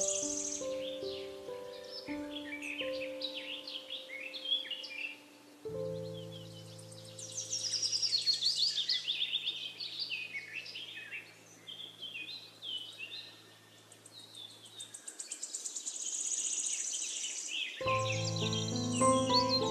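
Forest birdsong, several birds chirping and trilling, mixed with soft piano music. The piano plays notes for the first few seconds, then a low steady tone holds until about three-quarters through, leaving the birds alone until the piano returns at the end.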